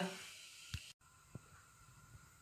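Near silence after a voice trails off: faint room tone with a soft click a little before the middle, then a brief dead-silent gap.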